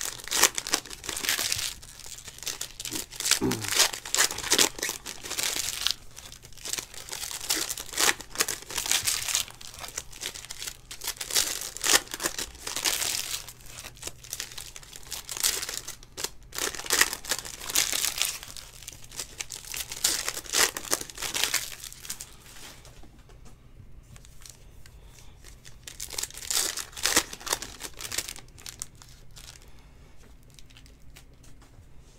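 Foil trading-card pack wrappers being torn open and crinkled by hand, in irregular bursts of crackle. The crinkling thins out about three-quarters of the way in, with one last burst shortly before the end.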